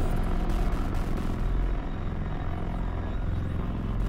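A steady, low rumble from a sound-design soundscape, with most of its weight in the bass and little high end.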